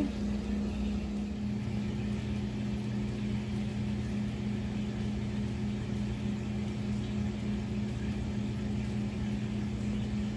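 Steady electric hum of an aquarium pump running a bubbling larval kreisel, with a second, lower hum tone joining about a second in.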